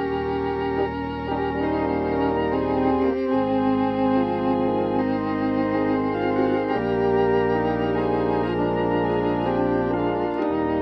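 Organ playing a slow hymn, with chords and bass notes held steadily and the bass note changing about every three and a half seconds.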